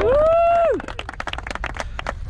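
A man's single drawn-out cheer that rises, holds and falls away within the first second, followed by scattered hand claps from a small group.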